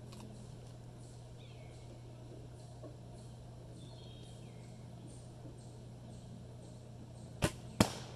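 Traditional bow shot at a balloon target: a sharp snap as the bowstring is released about seven seconds in, then a second, louder crack less than half a second later as the arrow reaches the target. Before the shot, only faint bird chirps over a steady low hum.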